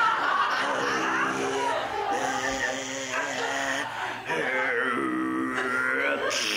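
A man's voice making long, drawn-out groans and cries, a string of held notes about a second each with slow bends in pitch: slow-motion vocal effects for a puppet fight.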